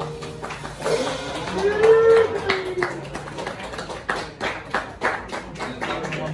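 A small audience clapping and cheering as a jazz tune ends, with one long whoop about two seconds in.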